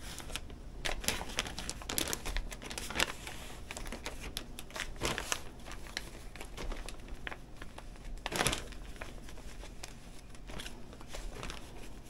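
Clear zip-top plastic bag crinkling and rustling in irregular bursts as skeins of cotton yarn are pulled out of it by hand, with a louder crinkle about two-thirds of the way through.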